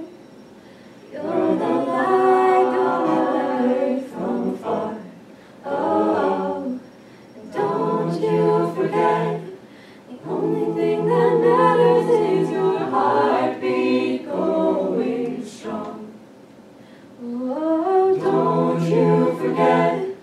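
Mixed-voice a cappella group singing in harmony with no instruments, in sustained phrases broken by several short pauses.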